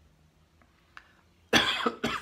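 A man coughing into his fist: a sudden loud cough about one and a half seconds in.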